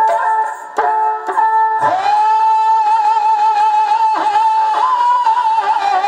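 Dhadi folk music: a sarangi bowed and dhadd hand drums struck, then from about two seconds in a long held, wavering sung note over the sarangi.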